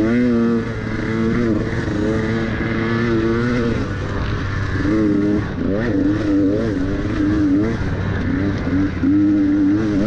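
Dirt bike engine under way, revving up and down as the throttle is worked along a tight, twisting trail. Its pitch rises and falls about once a second over a steady rushing noise.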